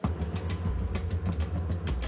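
Low steady rumble of a moving vehicle on the road, with music playing over it.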